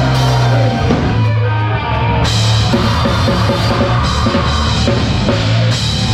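Live metalcore band playing loud, heard close to a Pearl Masters Maple drum kit with Zildjian cymbals: drums pounding under sustained heavy low guitar and bass notes. The cymbals crash in about two seconds in and keep washing over the rest.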